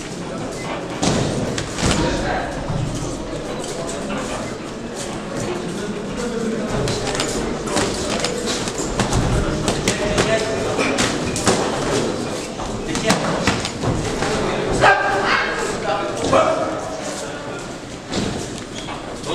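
Boxing gloves thudding as punches land in an amateur bout, mixed with footwork on the ring canvas, repeated impacts echoing in a large hall. Voices call out from around the ring.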